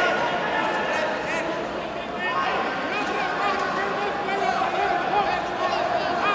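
Many overlapping voices talking and calling out at once, a steady hubbub in which no single speaker stands out.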